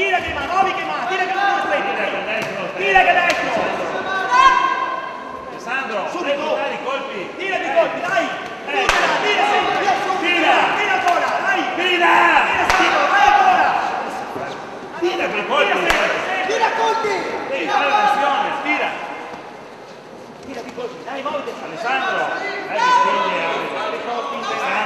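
Men's voices shouting from ringside during an amateur boxing bout, with a few sharp thuds from the ring among them.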